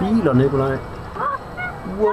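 Voices calling out without clear words: short cries that rise and fall in pitch, loudest in the first second, then a few brief rising calls.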